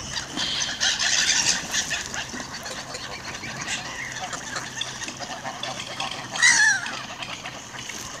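A mixed flock of geese, ducks and gulls calling on the water, busiest in the first two seconds, with one loud call falling in pitch about six and a half seconds in.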